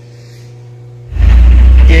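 A faint steady hum, then about a second in an abrupt cut to a loud, steady low rumble of a small pickup truck, heard from its open cargo bed.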